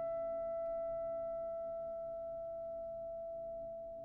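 Orchestral concerto music: a single held high note, steady and pure in tone, slowly dying away over a faint, quiet low orchestral background.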